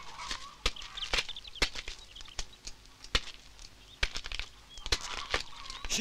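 Slow footsteps on bare dirt ground, a sharp step roughly every half second, with faint bird chirps in the background.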